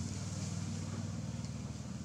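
A steady low engine hum, running evenly without change.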